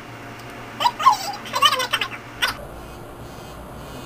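The trimmer of a Schick Hydro Silk TrimStyle razor, run on a AAA battery, switches on about two and a half seconds in and runs with a faint, steady high whine. Before that come a few short wordless vocal sounds from the person trying to start it.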